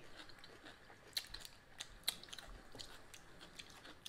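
Faint chewing of a crisp cucumber taco shell: a few scattered crunches and wet mouth clicks.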